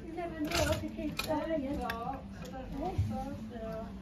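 A woman talking, her words not made out, with two sharp clicks in the first second or so.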